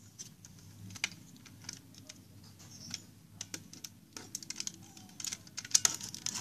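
Hard plastic toy parts clicking and knocking as they are handled and fitted together, with scattered single clicks and a quick flurry of clicks near the end.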